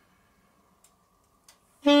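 Near silence with a couple of faint clicks, then just before the end a saxophone note begins, loud and held at a steady pitch.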